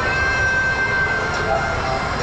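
Shopping-mall atrium ambience: indistinct crowd chatter and background music over a steady low hum.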